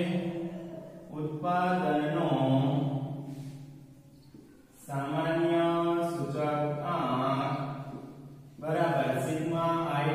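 Only a man's voice: slow, drawn-out, sing-song phrases with a short pause about four seconds in.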